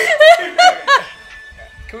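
A woman laughing in high-pitched peals, about four quick bursts in the first second, then trailing off.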